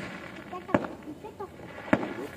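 Firecrackers going off: two short, sharp bangs about a second apart, with faint voices in between.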